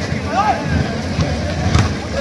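Spectators talking and shouting around an outdoor volleyball court, with one voice calling out about half a second in. Near the end there is a sharp slap of a volleyball being struck.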